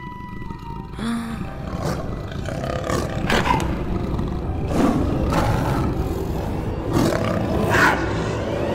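Big-cat roaring, a cartoon sound effect, repeated several times and growing louder, over dramatic music.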